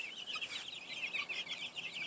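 A flock of young chicks peeping: many short, high peeps overlapping in a steady stream.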